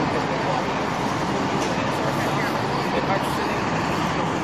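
Steady city street traffic noise, with indistinct voices in the background.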